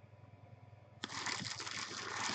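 Clear plastic wrapping crinkling and rustling as a bagged jersey is handled, starting suddenly about halfway in after a second of low hum.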